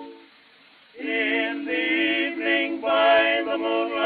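Male vocal quartet singing in close harmony on a 1908 acoustic-era Victor disc recording, with nothing above about 4.5 kHz. A held chord dies away at the start, a brief near-silent pause follows, then the voices come back in together about a second in and carry on singing.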